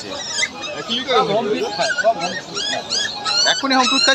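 Labrador puppies whining with short, high cries that rise and fall, over the chatter of voices.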